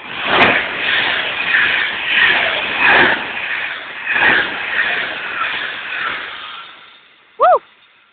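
Class 390 Pendolino electric train passing a station platform at speed: a rushing whoosh of air and wheels on rail that comes in several waves, then fades away over the last couple of seconds.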